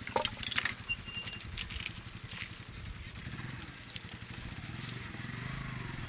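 Motorcycle engine running steadily with a low pulsing rumble. A few sharp clicks come in the first second.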